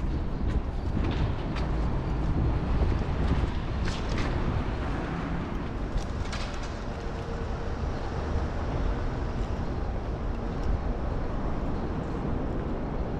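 City street traffic noise: a steady low rumble of road vehicles, with a few short sharp clicks.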